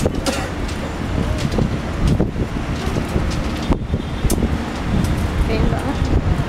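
Wind buffeting the microphone in a loud, uneven low rumble, with faint voices and a few sharp clicks.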